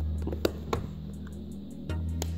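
Screwdriver tip clicking against a plastic courtesy-light lens and its retaining clip as it is pried out: a few sharp clicks, the loudest about half a second in and another near the end as the lens comes loose. Background music plays underneath.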